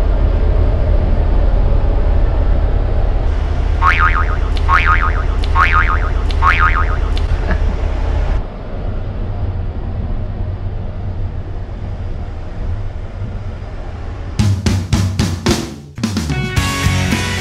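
Steady low rumble and hiss of a moving train heard from inside the carriage, with four short falling tones about a second apart early on. The rumble steps down partway through, and drum-led music starts near the end.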